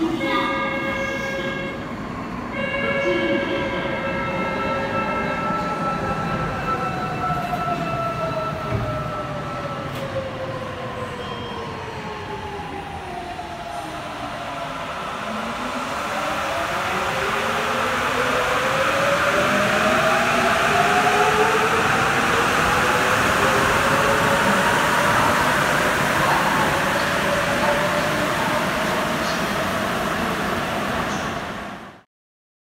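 Rubber-tyred Sapporo subway trains in an underground station. Two short steady tones sound near the start. An electric traction motor whine then falls in pitch as a train slows to a stop. From about halfway a rising whine and a growing rumble follow as a train accelerates away.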